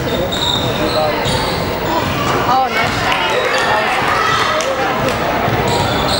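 Basketball being bounced on a hardwood gym court amid the chatter of players and spectators, with short high squeaks scattered through.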